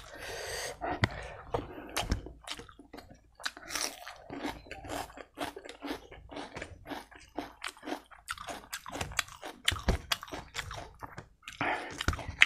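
Close-up chewing of a mouthful of fatty pork belly and rice: a fast, irregular run of wet smacking clicks.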